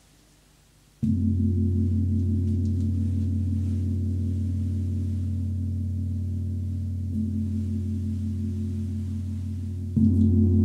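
Large Jupiter planetary gong struck once with a felt mallet about a second in, then ringing on with a deep, sustained hum that fades slowly. It is struck again right at the end.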